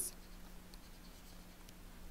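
Faint scratching of a stylus writing on a tablet, over a low steady hum.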